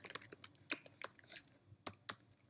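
Computer keyboard typing: a run of light, uneven keystroke clicks.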